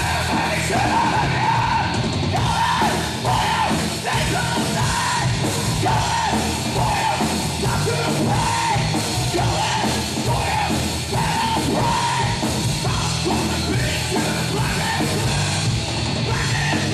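Live heavy metal band playing at steady full volume: electric guitars and a drum kit.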